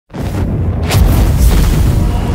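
Cinematic logo-intro sound effect: a deep rumbling boom that starts suddenly, with a rushing burst sweeping in about a second in.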